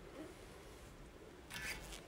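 Faint room tone with a brief rubbing, rustling noise about one and a half seconds in: handling noise from the hand-held camera being moved in close.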